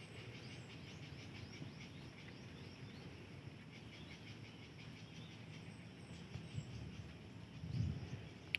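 Faint outdoor ambience of birds chirping and insects calling over a low, steady background noise, with a couple of soft bumps near the end.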